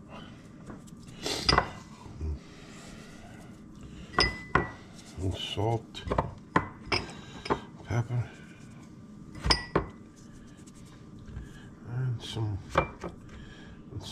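Scattered clinks and knocks of kitchenware: jars, utensils and a glass baking dish handled on a stone counter. There are a dozen or so sharp taps at uneven intervals, a few of them with a short ring.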